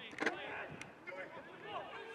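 Distant shouting from footballers and spectators around an outdoor pitch, with one sharp knock, like a ball being kicked, about a quarter-second in.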